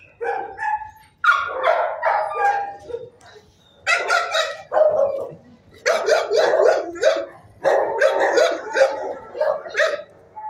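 Dogs in a shelter kennel barking in repeated volleys of several barks each, with short pauses between them.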